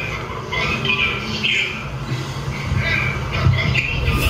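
Indistinct speech, thin and muffled, from a video clip being played back.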